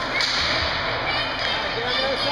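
Ice hockey game on an indoor rink: a steady din of skates, sticks and spectators, with a short sharp scrape or slap about a quarter second in.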